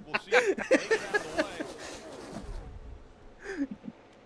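Men's quiet, breathy laughter and gasps that trail off, with one short vocal sound near the end.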